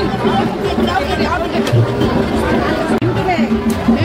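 Crowd chatter: many voices talking over one another at a busy street-food stall, with a steady low hum underneath.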